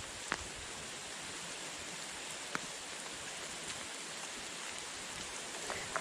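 Light rain falling as a steady, even hiss, with two faint ticks of drops.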